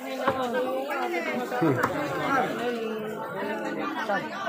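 Busy market chatter: several vendors and shoppers talking at once, their voices overlapping, with a few short clicks from handling at the stalls.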